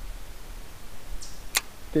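Quiet background with a low, steady rumble and a single sharp click about one and a half seconds in.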